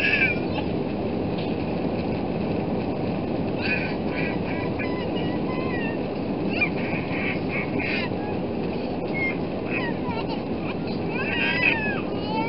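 Jet engines at takeoff thrust and runway rumble heard inside the cabin of an Airbus A320-family airliner during the takeoff roll: a steady low noise. A small child's high-pitched cries rise and fall over it now and then, most near the end.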